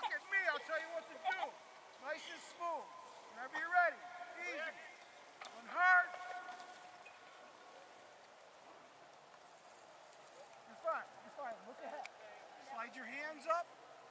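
Distant people's voices, talking and calling out in short phrases, with a few seconds of quiet in the middle before the voices start again.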